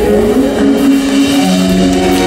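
Live rock band holding a sustained final chord, with a note gliding upward in pitch about half a second in, as at the close of a song.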